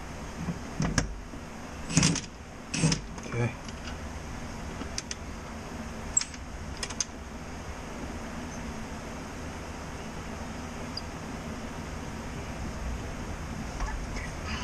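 Metal clinks and a few short knocks from a socket tool working the nuts on a leaf-spring U-bolt, most of them in the first half, over a steady low hum.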